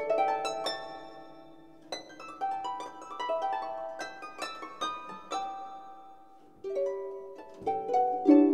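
Solo harp playing: phrases of plucked notes and broken chords, each note ringing on and fading, with a quieter gap just after six seconds before a new, louder phrase near the end.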